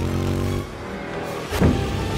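Action-film sound mix: a vehicle engine running under dramatic music, with one sudden loud hit about one and a half seconds in.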